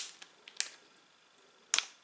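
Plastic snack bag crinkling as it is handled and turned over, in three short sharp crackles with quiet between.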